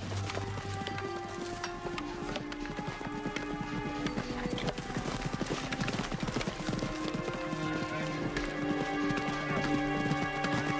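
Background music with long held notes, over the clip-clop of horses' hooves.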